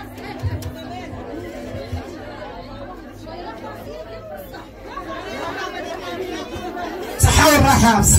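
Chatter of several people in a large hall, with a steady low hum that fades about three seconds in and a few low thumps. About seven seconds in, a woman's voice comes in much louder through a microphone and PA.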